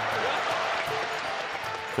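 Arena crowd applauding and cheering, an even wash of noise, with faint background music underneath.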